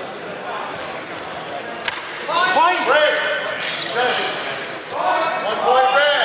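A single sharp knock just before two seconds in, then several loud shouted calls whose pitch rises and falls, men's voices calling out as the exchange is stopped.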